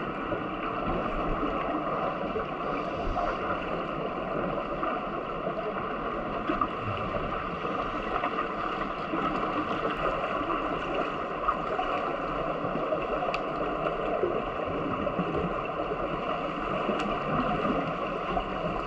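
Steady water noise of a swimming pool heard underwater through a submerged camera, with a few faint clicks.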